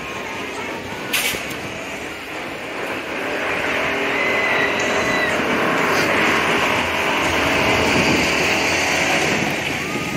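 Outdoor hubbub of a crowded seaside amusement boardwalk, with voices in the background. A sharp click comes about a second in, and a steady machine-like rumble swells from about three seconds in and eases off near the end.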